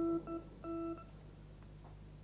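Electronic keyboard sounding the same single note three times, long, short, then long, and stopping about a second in.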